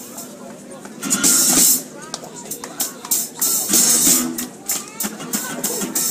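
Small rock and roll band playing live: a man's voice over sparse drum and cymbal hits, after a quieter first second.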